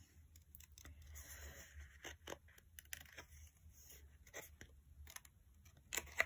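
Faint, irregular snips of small scissors fussy cutting around a printed paper picture, with soft rustling of the paper as it is turned against the blades.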